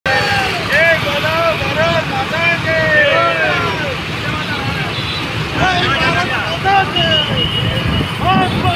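Many motorcycles and scooters running together in a rally, a low rumble, with men's voices shouting short calls over them.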